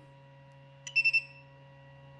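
A high-temperature 3D printer's touchscreen control gives a click and a short electronic beep about a second in as a button is pressed, over the faint steady hum of the running machine.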